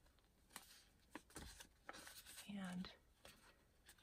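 Faint rustling and a few light ticks of paper being handled: a patterned paper scrap and a paper envelope being shifted and folded by hand.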